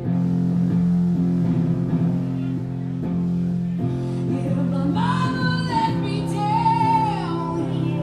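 Live rock band playing: electric guitar chords held over a steady low accompaniment, with a woman's singing voice coming in about five seconds in.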